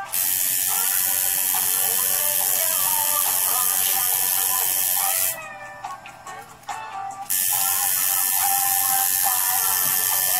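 Electric tattoo machine buzzing as it works the skin. It runs for about five seconds, stops for about two, then starts again, over background music.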